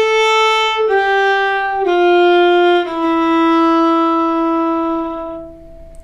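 Solo violin bowing a slow descending stepwise phrase in F major, one note about each second, ending on a long held low note that fades out about five and a half seconds in.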